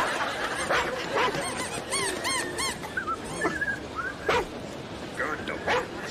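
A dog whimpering and yipping: a quick run of short, high, rising-and-falling cries about two seconds in, and a few more scattered cries after, over background crowd noise.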